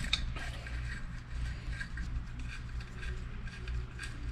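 Faint, scattered metallic clicks and ticks of a 4 mm Allen key turning the bottle-cage mount screws out of a bicycle frame, over a low steady hum.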